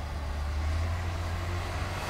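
Snowplow trucks passing slowly on a snow-covered road: a steady low engine rumble that grows slightly louder as the heavy plow truck approaches.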